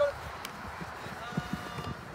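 Faint, distant shouts of players across an open sports field, over a low rumble, with a brief loud voice blip right at the start.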